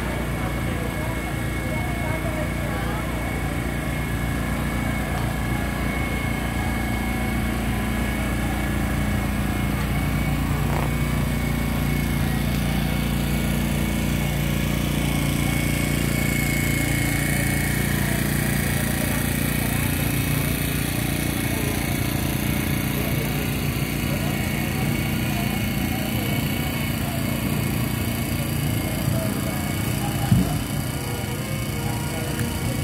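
A small engine running steadily with a low hum, with people's voices over it.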